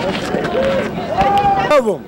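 A man yelling in drawn-out, wordless cries over street crowd noise; the last cry slides down in pitch near the end.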